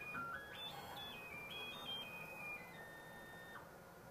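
AMCI SMD23E integrated stepper motor driving a ball screw, its faint high whine stepping up in pitch over the first second and then stepping back down as the jog speed is changed, stopping shortly before the end.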